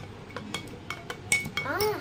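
Metal spoon clinking against the inside of a drinking glass as a drink is stirred: several light clinks, the loudest about a second and a half in with a short ringing tone. Near the end a girl's voice calls out.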